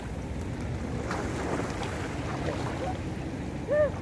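Steady wash of sea water with wind noise on the microphone. A brief rising-and-falling call sounds near the end.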